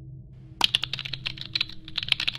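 Computer keyboard typing: a quick run of key clicks starting about half a second in, with a brief pause near the end before they resume.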